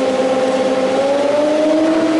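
Electric radiator cooling fan driven by a PWM fan controller, running steadily. About a second in, its pitch rises as the fan speeds up, following the controller's A/C preset being turned up.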